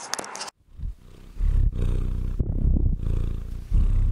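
A house cat purring close to the microphone. The purr starts about a second in and comes in low, rhythmic stretches with short breaks for breath.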